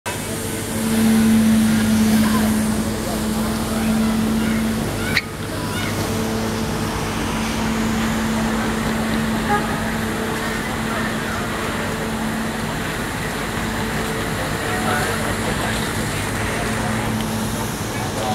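Downtown street ambience: traffic noise under a steady low machine hum, with a brief break in the sound about five seconds in.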